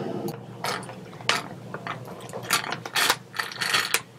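Irregular clicking from a computer mouse and keyboard, about a dozen sharp clicks in four seconds, bunching together near the end.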